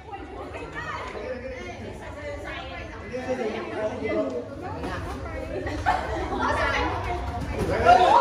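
Many voices chattering and calling out over one another in a large hall, getting louder toward the end, where one voice rises in a loud drawn-out call.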